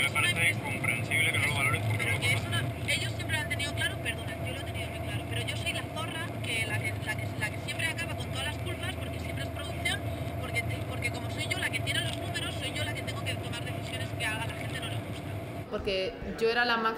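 Car cabin noise from the back seat: a steady low engine and road drone with a constant hum above it, and quiet talking over it.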